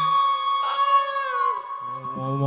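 A woman singing one long, high, held note with light acoustic band backing. The low bass notes drop out beneath it and come back near the end.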